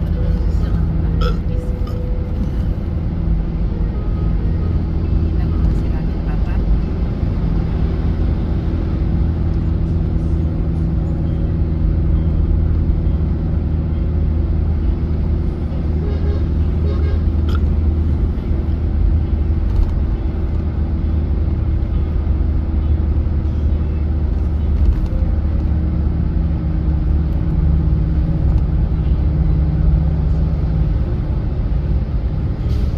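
Steady engine and road drone inside a car cruising on an expressway, a constant low hum with tyre noise above it.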